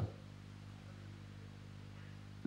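A low, steady hum with a faint hiss beneath it, in a pause between words.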